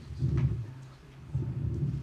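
Handheld microphone being handled, giving two spells of low rumble and bumping, the second starting about a second and a half in.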